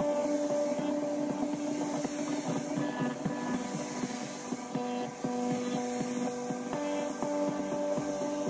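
Battery-powered leaf blower running steadily, a motor whine over a rush of air, as it blows grass clippings across a lawn.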